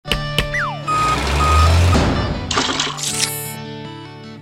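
Cartoon title-sequence sound effects over an intro music sting: two sharp knocks, a falling whistle, two short beeps, a loud whooshing swell with a low rumble, then a bright rising chime, leading into a few held music notes.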